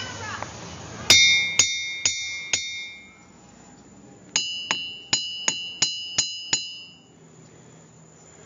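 A hammer tapping ringing-rock boulders of diabase, each strike giving a clear bell-like ring. There are four quick taps about two a second, then after a pause seven more on a higher-ringing stone.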